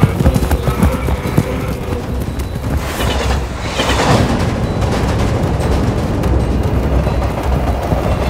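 A herd of camels on the run, many hoofbeats over a low rumble, with a rushing swell of noise about four seconds in as a freight train passes. Film music sits underneath.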